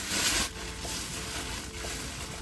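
A brief rustle of something being handled close to the microphone during the first half-second, then a low steady background hiss.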